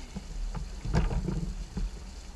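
Water and wind noise around a small open fishing boat, with a series of short knocks and thumps, the loudest about a second in, as a large fish on a handline is gaffed and hauled against the side of the boat.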